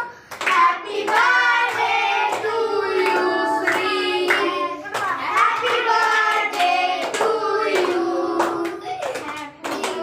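A group of children singing a birthday song together and clapping along in time.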